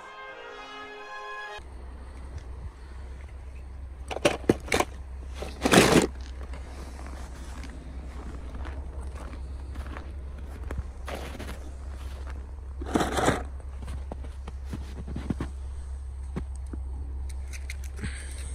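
Brief film music cut off about a second and a half in, then a steady low wind rumble on the microphone with a few loud crunches in snow around four, six and thirteen seconds in.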